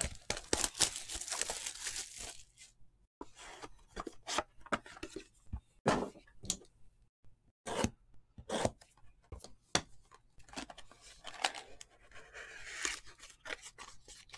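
A sealed 2020 Topps Triple Threads baseball box being torn open by hand. A run of tearing and crinkling wrap comes first, then scattered sharp rips and clicks as the cardboard box is opened and its contents pulled out.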